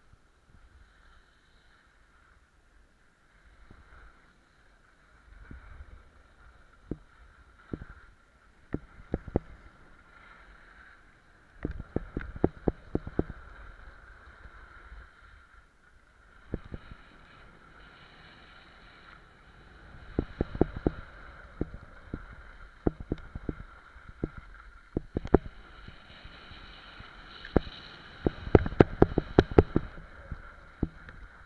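Skis sliding and scraping over packed snow on a downhill run, with bursts of sharp clicks and rattles that grow loudest near the end.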